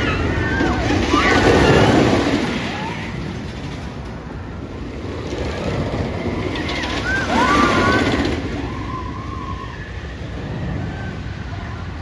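Wooden roller coaster train rumbling along its track, swelling twice, about two seconds in and again near eight seconds, while riders scream and yell.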